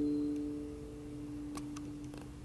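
The last notes of an acoustic guitar piece ringing out and dying away, played back through Totem Acoustic Hawk floor-standing speakers in a small room. Two faint clicks come near the end.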